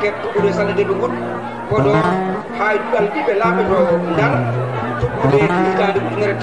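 A man's voice chanting into a microphone in long, held, melodic phrases, with instrumental music underneath.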